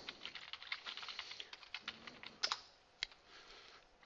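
Computer keyboard typing: a quick run of keystrokes over the first two seconds, then a couple of louder single key strikes, as a short command is typed and entered.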